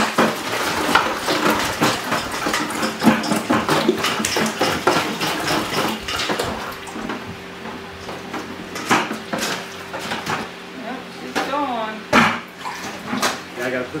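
Rinse water sloshing and pouring in the stainless-steel can of a bucket milker during its clean-up rinse, with clanks of metal and plastic as the can, bucket and lid are handled. A steady low hum comes in about halfway through.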